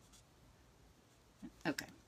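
Faint rubbing of an alcohol-ink marker tip (a dark grey Stampin' Blends) shading on stamped cardstock, then a woman says "Okay" near the end.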